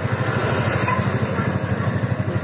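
Small Honda motorcycle engine idling, a steady, rapid, even putter.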